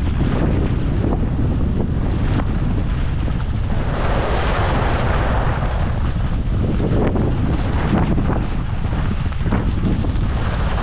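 Loud wind buffeting on the microphone of a camera carried by a moving skier. Under it is the hiss of skis sliding and carving over groomed snow, which swells for a couple of seconds around the middle.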